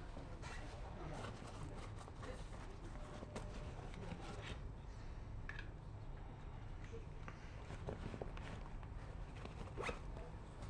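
Faint steady low hum inside a stationary tram, with scattered small clicks and rustles and a sharper click just before the end.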